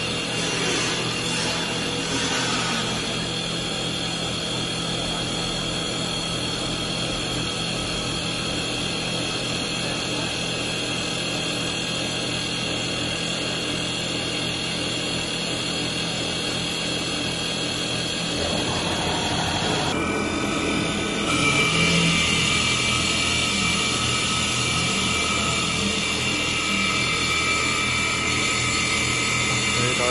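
Double-axis CNC wood lathe cutting two wooden baseball bat blanks at once: a steady machine whine with several held tones over cutting noise. About twenty seconds in the tones shift in pitch and the sound gets a little louder.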